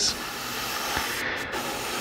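Airbrush spraying, a steady hiss of compressed air through the nozzle.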